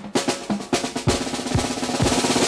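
Drum fill in an instrumental passage of a Hindi film song: a quick run of snare and drum strokes over a held note, with no singing.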